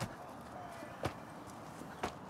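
Two short, sharp thuds about a second apart, from digging into the ground by hand.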